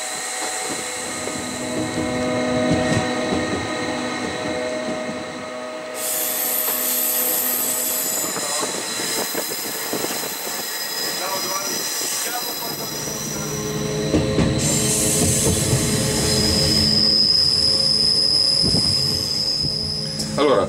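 Bernina Express train running on the mountain line, with a steady high-pitched squeal of the wheels on the curves, strongest near the end.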